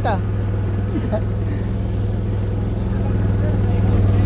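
A small motor vehicle's engine running steadily at a constant low speed, a deep even hum.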